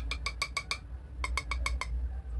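Clear jar of loose face powder tapped repeatedly to shake powder out into its lid: two quick runs of light clicks, about eight a second, with a short pause between.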